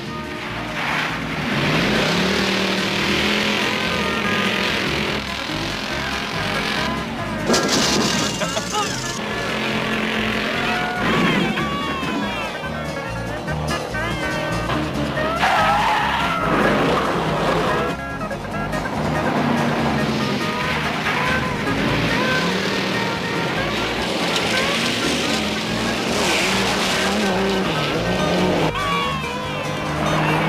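Several cars racing on dirt roads, engines revving up and down and tires skidding, with a music score playing under them.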